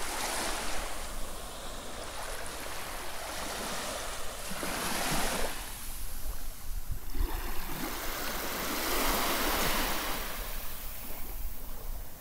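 Small, gentle waves washing up onto a sandy beach, the surf swelling and falling back every few seconds.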